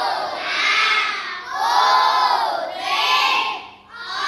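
A class of schoolchildren shouting together in unison, three long drawn-out phrases whose pitch rises and falls, a group thank-you to the book donor.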